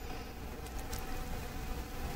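Faint steady buzzing hum over low hiss, with a couple of very faint ticks: background room tone with no speech.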